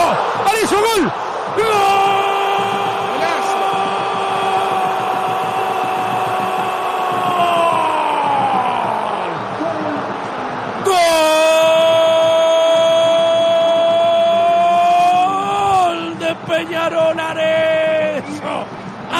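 A radio football commentator's goal cry, a long drawn-out "gol" held on one pitch for about seven seconds and falling away at the end, then a second long held cry after a short break, followed by broken shouting. It is the call of a goal just scored.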